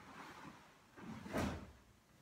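Movement sounds of a karate kata: a soft rustle, then a sudden sharp swish and snap of the cotton karate gi as a hand technique is thrown, about a second and a half in.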